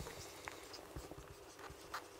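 Marker pen writing on a whiteboard: faint, short scratchy strokes and light taps as a word is written out.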